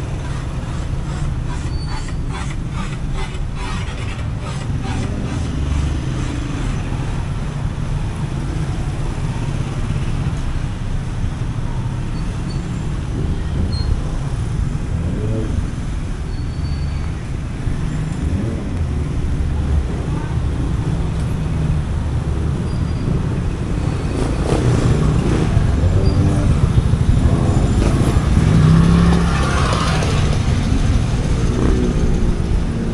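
Busy road traffic passing close by: cars, vans and motorcycle tricycles running in a steady rumble, which grows louder for a few seconds near the end as vehicles pass.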